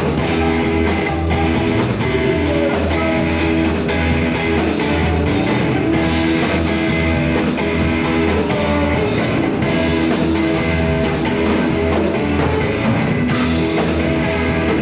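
Live rock band playing: electric guitars over bass and a drum kit, at a steady beat.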